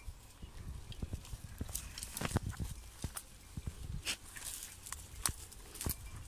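Footsteps through tall dry grass, the dry stalks rustling and snapping in irregular crackling clicks.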